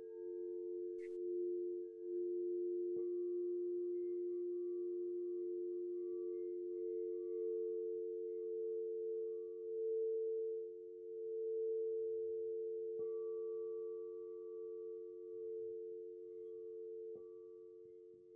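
Singing bowls ringing in background music: two low, steady tones sustained and slowly pulsing, with fresh strikes a few seconds in, about thirteen seconds in and near the end. A short click sounds about a second in.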